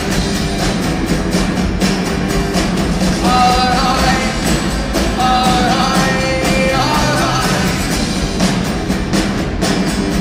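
Live indie folk-rock band playing loudly, recorded from the audience: a full band sound with a melody line over bass and drums.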